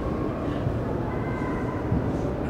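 Steady low rumble and hum of room noise in a large exhibition hall, with no one speaking, and a light knock near the end.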